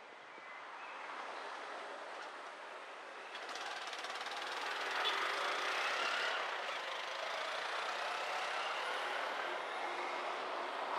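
Traffic and road noise heard from a moving car in city streets: a steady rush of tyres and passing vehicles that grows louder over the first few seconds and then holds.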